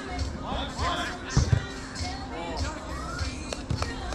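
Players' voices calling across an artificial-turf football pitch, mixed with dull thuds of a ball, the loudest about one and a half seconds in.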